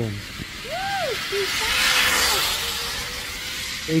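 Zip line trolley running along the steel cable: a hiss that swells to a peak about halfway through and then fades as the rider goes by. A short tone rises and falls about a second in.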